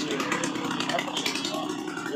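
A man speaking Tamil in an outdoor interview, over a steady low hum.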